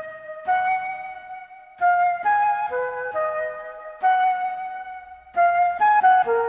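Synthesized flute patch from the ANA2 synth ('Gem Flute' preset) playing a melody of held notes on its own, in short phrases with brief gaps between them.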